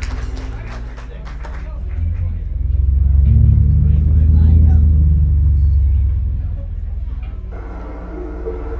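Electric bass guitar through a stage amplifier holding a deep, low rumbling note that swells up in the middle and fades back down near the end, with a few sharp clicks in the first couple of seconds.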